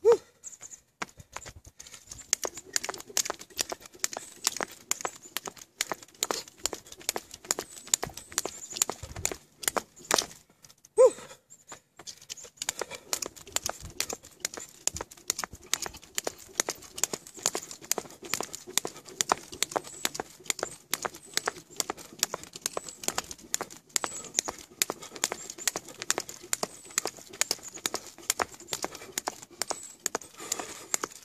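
Jump rope skipping on pavement: quick, steady clicks of the rope slapping the ground and the landings, with a short break near the middle.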